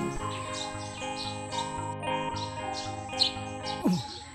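Soft background music of held tones, with a run of short, high bird chirps repeating over it.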